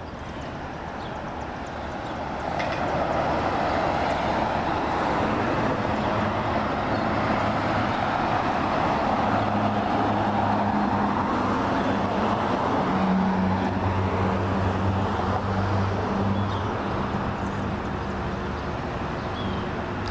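Road traffic on a wide city street: tyre and engine noise that swells about two seconds in, with a vehicle's low steady engine hum through the middle.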